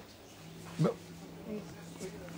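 A faint, steady low hum starts about half a second in and holds one pitch. It sits under a quiet room and a single short spoken word.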